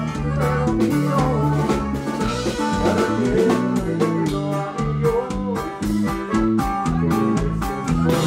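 A band playing an instrumental passage: electric bass walking a steady line under drum-kit beats, with saxophone and bajo sexto on top.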